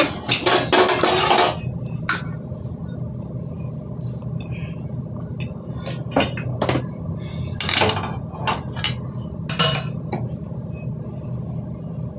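Metal cookware clattering: a quick run of clinks and knocks at the start, then scattered single clinks later, over a steady low hum.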